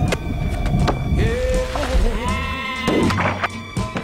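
Soundtrack music with a long, wavering, pitched call over it, held for about a second from just after the first second.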